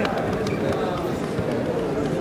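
Indistinct voices of people talking in the background of a sports hall, with a brief click at the start.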